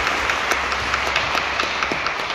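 Audience applauding: many hands clapping together in a steady patter.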